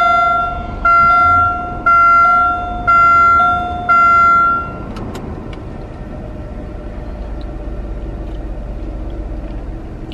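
A car's dashboard warning chime sounding five times, about once a second, as the car is switched on, then stopping about five seconds in. A steady low hum of the running car follows.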